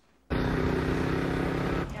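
Car engine running hard at a steady speed, cutting in suddenly after a moment of silence. Near the end it drops to a quieter, steady drone.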